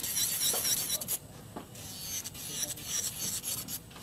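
Electric nail drill with a metal bit grinding the sides of a dip-powder acrylic nail: a high, wavering whine with a rasping rub where the bit touches the nail. The whine drops away briefly a little over a second in and again near the end, as the bit comes off the nail.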